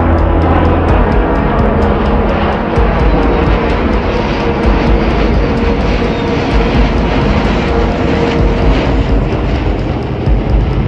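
Jet engine noise of a B-21 Raider stealth bomber passing low overhead, a loud, steady rush, mixed with background music that has a regular beat.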